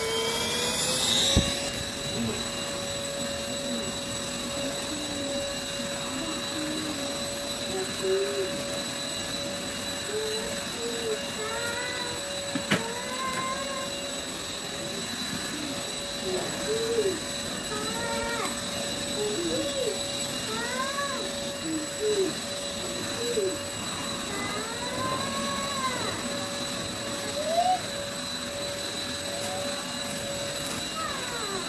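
Cordless stick vacuum cleaner running as it is pushed over a hard floor. Its motor whine rises over the first second or so, then holds at one steady pitch.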